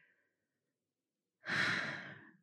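Near silence, then about one and a half seconds in a woman lets out a breathy sigh that trails off.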